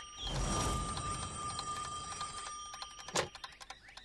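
Old rotary telephone's bell ringing with a rapid metallic clatter, stopping about three seconds in with a click as the handset is lifted.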